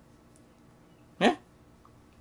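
A single short yelp rising sharply in pitch, a little over a second in, against quiet room tone.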